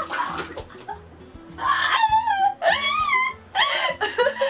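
A mouthful of water sprayed out in a short spluttering burst, followed from about a second and a half in by high-pitched laughter, over background music.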